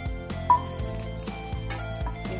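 Food sizzling as it fries in hot oil in a steel pan, setting off with a sharp hit about half a second in and hissing on after it. Background music plays throughout.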